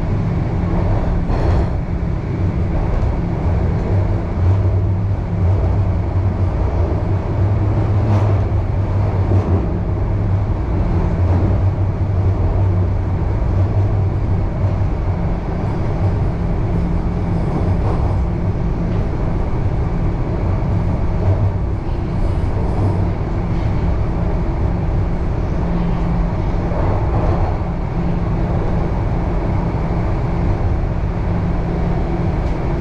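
Toronto Rocket subway train running, heard from inside the car: a steady rumble of wheels on rail with a low motor hum. The train is pulling away from the platform into the tunnel, and the hum is strongest over the first half.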